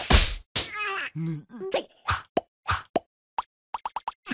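Cartoon sound effects after a water balloon bursts. A short splash tails off right at the start, then a character's gibberish voice sounds for about half a second, then comes a quick, irregular string of short comic sound effects.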